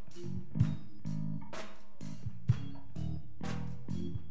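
Live band playing an instrumental: bass guitar notes over a drum kit keeping a steady beat with sharp cymbal and drum hits.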